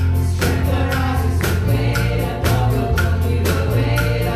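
Church worship team singing a gospel song together into microphones, backed by keyboard with held bass notes and a steady beat.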